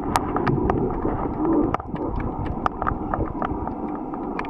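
Underwater ambience picked up by a submerged camera: scattered sharp clicks and crackles over a steady low rumble, with a low hollow hum during the first two seconds or so.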